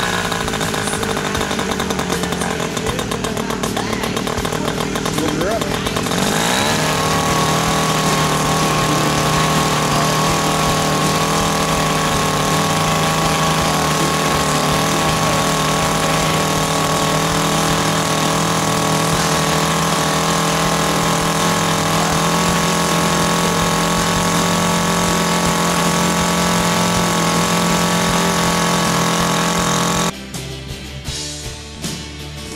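Moki 2.10 two-stroke glow model-aircraft engine running on a test bench during its break-in, a steady high buzz. About six seconds in it picks up speed and then holds the higher note.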